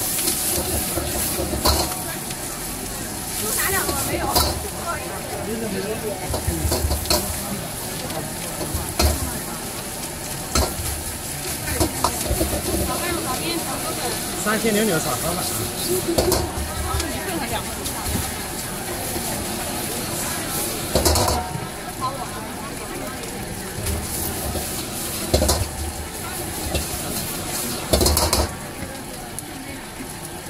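Fried rice being stir-fried in a large steel wok with a metal ladle: a steady sizzle, with the ladle scraping and knocking on the wok every second or two. There are a few louder clangs in the second half.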